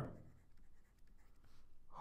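Faint scratching of a stylus writing on a tablet screen.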